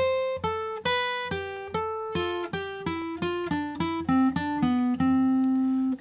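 Gibson J-45 acoustic guitar playing the C major scale in thirds, descending. About fourteen single picked notes step downward in alternating pairs, from a high C to a low C, which rings for the last second.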